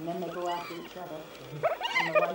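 Spotted hyenas calling while squabbling over food: low, wavering calls, then a short rising call near the end. This laughing-type calling is a sign of stress, aggression and competition over the kill.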